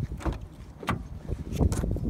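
Volkswagen Scirocco's driver door being opened: several clicks and knocks from the handle and latch, the loudest near the end, over handling rumble.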